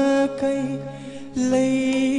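A male singer holding long, slightly wavering notes over a live band through a PA system, with a quieter stretch of about a second in the middle before the voice comes back strongly.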